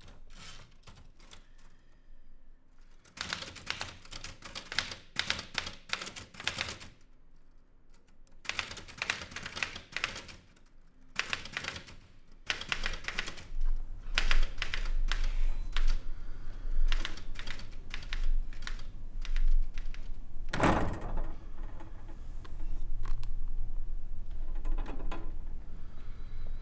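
Manual portable typewriter being typed on: bursts of rapid key strikes clacking, with short pauses between runs. Partway through, a low rumble comes in underneath, and one heavier thunk sounds about 21 seconds in.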